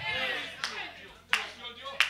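A couple of sharp hand claps in a church hall, over the echo of an amplified voice dying away.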